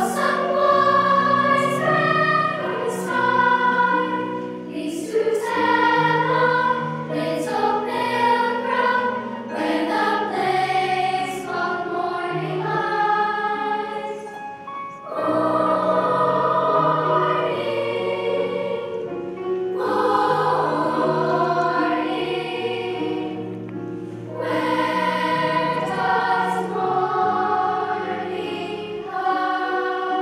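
Large children's choir singing with piano accompaniment; the phrases ease off briefly about halfway through and again near three-quarters of the way.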